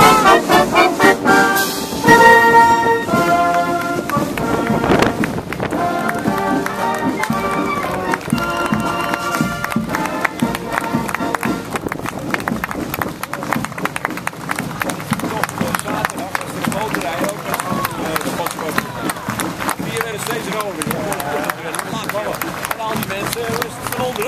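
Canadian military marching band playing clarinets and brass, loud at first and fading away over the first several seconds as it passes. After that, crowd chatter and street noise as soldiers march by.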